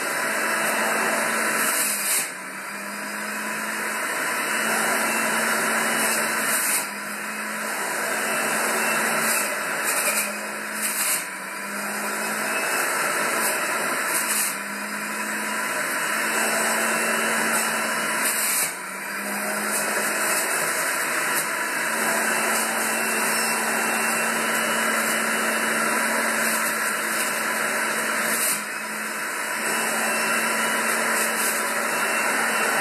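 Breville 510XL juice fountain's electric motor and spinning cutting disc running with a loud, steady whir. The sound dips briefly every few seconds as leafy greens are pushed down the feed chute into the spinning disc.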